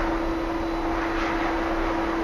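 A steady machine hum holding one constant pitch, with an even rushing noise under it.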